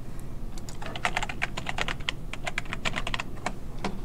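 Computer keyboard typing: a quick run of keystrokes starting about a second in, as a file name is typed.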